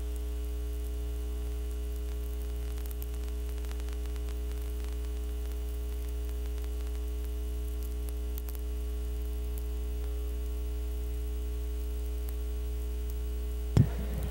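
Steady electrical mains hum with a ladder of overtones and a faint hiss, unchanging throughout.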